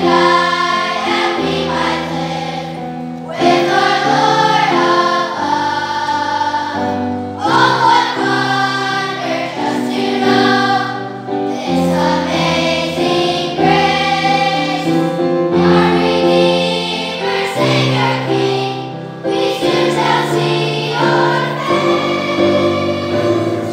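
A large children's choir singing a song in phrases of a second or two, over a low instrumental accompaniment.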